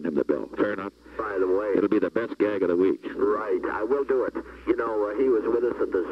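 Men talking over a recorded telephone line, the voices thin and narrow, with a brief pause about a second in.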